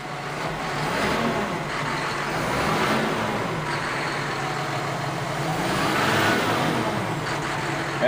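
John Deere 6150R tractor's six-cylinder diesel engine running, heard from inside the cab, its pitch swelling up and easing back twice; the engine is still cold.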